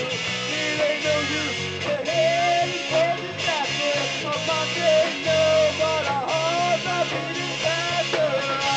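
Live rock band playing: electric guitars and a drum kit, with a lead melody bending up and down in pitch over a steady low part.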